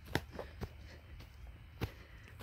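Footsteps on grass and a dirt path: a few soft, irregular steps, with a sharper one just after the start and another near the end.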